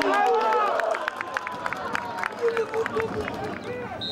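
Several men on a football pitch shouting and calling out, voices overlapping, with a run of short sharp knocks through the middle.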